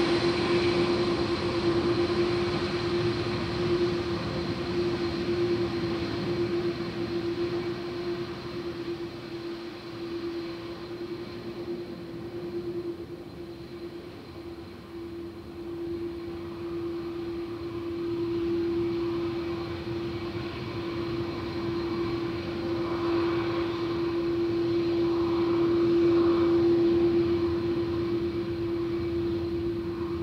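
Airbus A330-202 airliner's jet engines running at low taxi power as it turns onto the runway: a steady droning hum over a broad whoosh. The sound dips slightly partway through, then grows louder in the second half as the aircraft swings round to line up.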